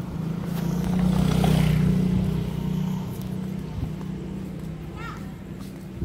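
Motorcycle engine running as it rides up and passes close by. It grows to its loudest about one and a half to two seconds in, then fades away.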